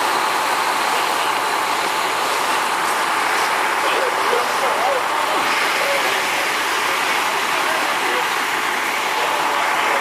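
Fire apparatus running steadily at a fire scene: a constant loud mechanical drone, with faint voices underneath.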